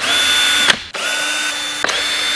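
Cordless drill with a 2.5 mm hex bit undoing the battery-case screws on a carbon electric skateboard deck: a steady motor whine that cuts out briefly a little under a second in and starts again, with another short break near the end.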